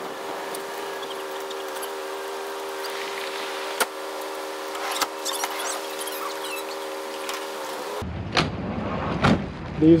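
A steady mechanical hum of several low tones, with a few faint clicks. It cuts off abruptly about eight seconds in, and two sharp knocks follow within the next second and a half.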